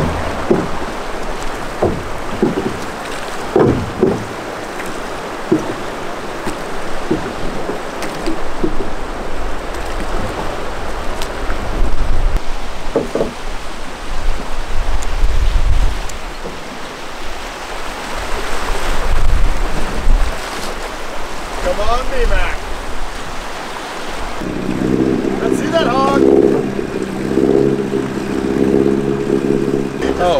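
Rushing river water through rapids, with wind gusting on the microphone. Near the end a steady low hum with several even tones joins in.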